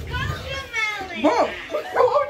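Excited boys' voices shouting and exclaiming, with a thump right at the start.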